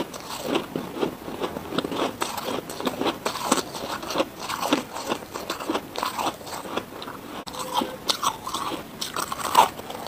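Chewing a mouthful of powdery freezer frost: steady, irregular crunching and crackling, several small crunches a second.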